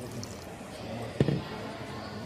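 Water pouring and splashing into a plastic vacuum desiccator tub, filling it to submerge a concrete test disc. There is one short knock with a brief low ring about a second in.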